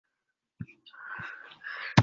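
A faint click, then about a second of soft, breathy voice noise from a person at an open video-call microphone.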